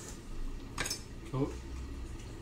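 Chopsticks clicking once against a bowl, about a second in, followed by a brief voiced 'mm'.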